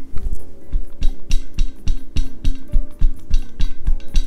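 Hydro Flask stainless steel water bottle patted repeatedly against the shoulder and upper back, a steady run of knocks about three or four a second, over background music.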